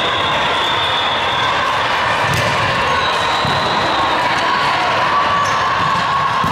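Echoing gymnasium ambience during an indoor volleyball rally: steady crowd and bench chatter, with a few sharp ball hits.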